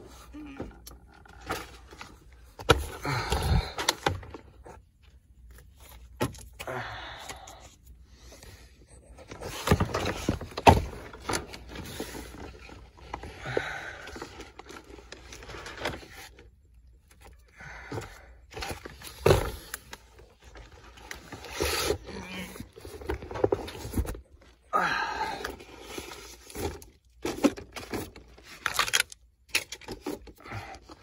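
A person belly-crawling over gravel in a crawlspace: irregular bursts of scraping and rustling from body and clothing dragging over the stones, with short pauses between moves and a few sharp clicks.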